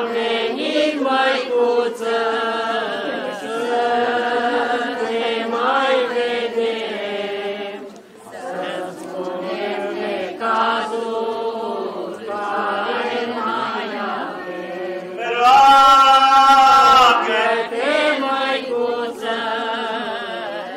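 Eastern Orthodox liturgical chant: slow sung melody with long held notes that glide between pitches. One phrase about three quarters of the way through is much louder than the rest.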